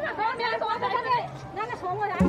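People chattering, several voices talking.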